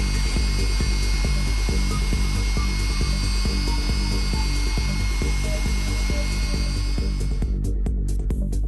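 Walter Line-Mate belt drive roller running a Blendex T-Lock abrasive belt against a stainless steel tube: a steady motor whine with abrasive hiss that cuts off about seven and a half seconds in. Electronic background music with a steady beat plays throughout.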